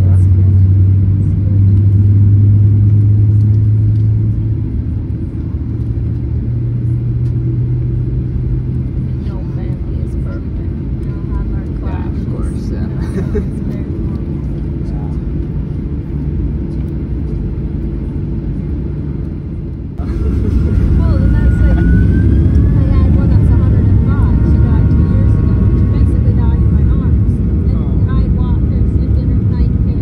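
Cabin sound of a Boeing 737-800 taxiing: the CFM56 engines and the rolling airframe make a steady low rumble. About two-thirds of the way in, the sound changes abruptly to a louder rumble with high engine whines, one gliding slightly upward, as the jet nears the runway.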